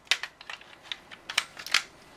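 A string of light, irregular plastic clicks and taps from a clip-on cooling fan being handled and fitted on a graphics card's aluminium-fin heatsink, the two sharpest near the end.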